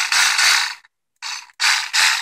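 Milwaukee M12 Hackzall (2420-20) cordless one-handed reciprocating saw running free with no blade fitted, in short trigger pulls: a run of under a second, a brief blip, then another run starting near the end.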